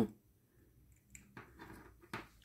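Almost silent for the first second, then a few faint soft clicks and rustles of small things being handled.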